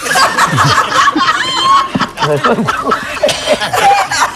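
Hearty laughter from several people at once, in choppy, overlapping bursts.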